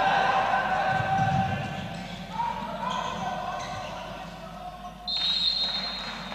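A handball bouncing on the court floor under shouting voices, then a referee's whistle blown once, about five seconds in: a single shrill blast held for under a second, stopping play.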